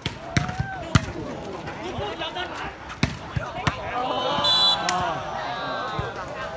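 A volleyball rally: a series of sharp slaps as players' hands and arms strike the ball, with spectators shouting and cheering. A short referee's whistle blows about four and a half seconds in, as the point ends.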